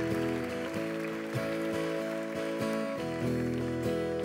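Acoustic guitar strumming slow, ringing chords in an instrumental intro, with no singing.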